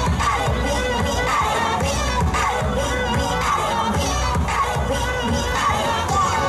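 Dance music with a steady beat played loud for a street dance show, mixed with a crowd shouting and cheering.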